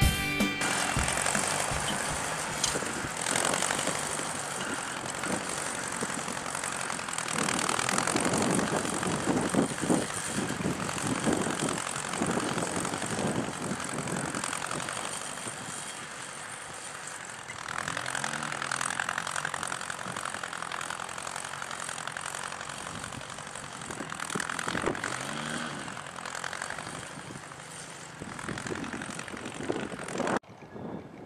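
1953 Ford Jubilee tractor's four-cylinder engine running under load as it pulls a two-bottom plow through ground unplowed for over 20 years. Twice in the second half the engine's pitch sags and comes back up.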